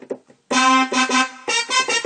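Roland FA-06 synthesizer playing chords in short, repeated stabs, starting about half a second in, on a layered piano and brass-section patch. The brass is brought in by the hold pedal as a manual crossfade.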